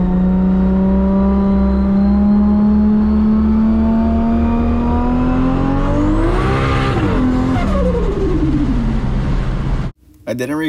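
Kei van engine heard from inside the cabin while driving, its note climbing slowly as the van accelerates, then rising sharply about six seconds in before falling away.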